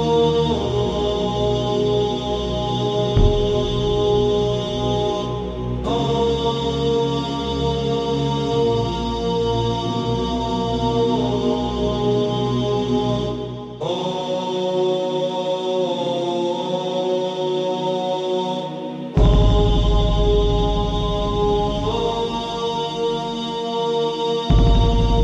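Background music in a slow chant style: long held vocal-like chords that shift every few seconds, with a deep bass drone coming in near the end.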